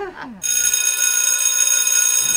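A school bell ringing steadily for about a second and a half, signalling the end of class, after a short voice that falls in pitch at the very start.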